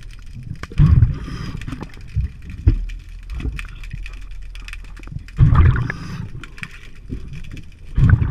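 Scuba diver's exhaled breath bubbling out of the regulator underwater, in two bursts of about a second each, roughly a second and five seconds in, with another starting at the very end. A steady low underwater rumble and scattered small clicks fill the gaps between breaths.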